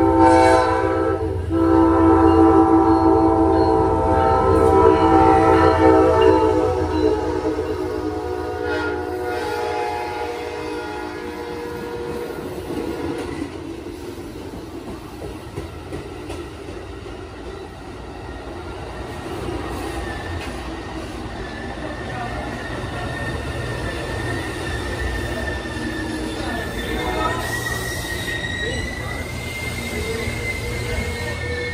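An Amtrak diesel locomotive's multi-chime air horn sounds a long blast, breaks off briefly about a second in, then blasts again for about six seconds. After that the passenger train rolls into the station, rumbling, and from about two-thirds of the way in a thin wheel-and-brake squeal rises slightly in pitch as the double-deck Superliner cars slow to a stop.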